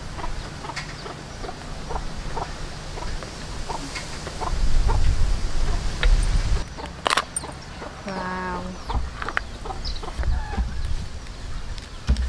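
Chickens clucking in the background, with one drawn-out cluck about eight seconds in. Scattered small clicks come from crab shells being handled, and a gust of wind rumbles on the microphone around the middle.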